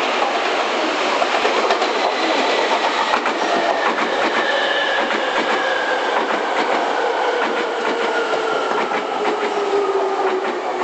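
Hankyu 3300 series electric train's traction motors making a loud whine that falls steadily in pitch as the train slows past. The wheels click over rail joints underneath.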